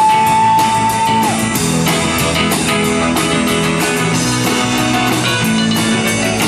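Live rock-and-roll band playing: electric guitar, bass, keyboard and drums with a steady beat. A long held high lead note, bent up at its start, ends about a second in.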